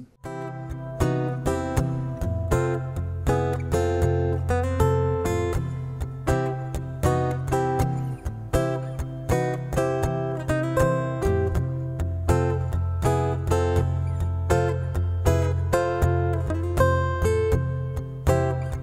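Acoustic guitar playing major triads on the top three strings over a blues chord progression, in a two-bar rhythmic pattern of chord stabs and picked single notes, sliding into the triad shapes. The triads side-slip and change between inversions while the backing chord stays put.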